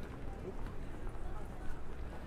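Busy pavement ambience: footsteps on paving and indistinct chatter of passers-by over a low rumble.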